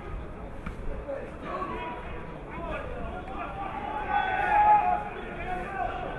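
Men's voices shouting and calling across an open rugby ground during play, with one louder, drawn-out shout about four seconds in.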